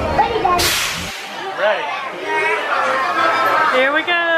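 A sharp hiss, about half a second long, half a second in, as the mine-train roller coaster is dispatched from its station: typical of the train's air brakes releasing. Voices follow.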